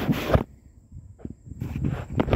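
Handling noise from the camera's microphone: a loud rub and rustle as the person sits down with it in the grass, cutting off about half a second in. A few soft knocks and scrapes follow.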